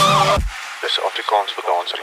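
An electronic dance remix ends: the kick-drum beat and synths cut off about half a second in. A short, quieter vocal phrase follows.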